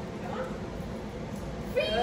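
A dog whining: a high, drawn-out whine that starts near the end.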